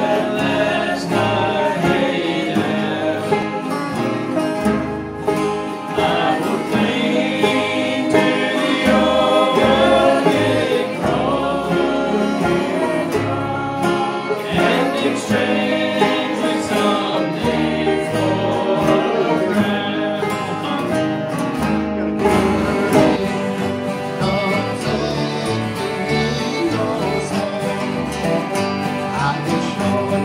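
Bluegrass jam played live by a group on acoustic guitars, mandolins and a resonator guitar, strummed and picked together at a steady tempo with a sung vocal line over the playing.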